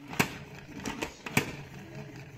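Two sharp plastic clicks about a second apart from the pump-knob mechanism of an OXO pump salad spinner as it is pushed down and springs back. Under them is a faint steady whir of the empty basket spinning.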